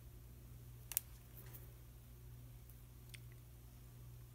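Quiet handling of a bunch of metal paper clips as their wire ends are bent up by hand: one sharp click about a second in and a fainter tick near three seconds, over a low steady hum.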